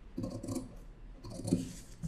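Tailoring shears cutting through thin printed dress fabric, quietly, in two short spells of cutting.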